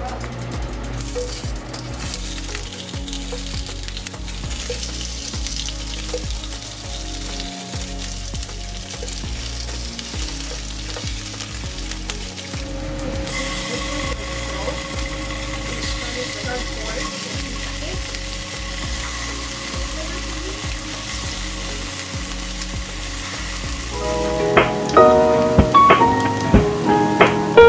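Oil sizzling steadily in a frying pan as food fries, under quiet background music with a steady beat. Near the end the music gets louder, with plucked notes.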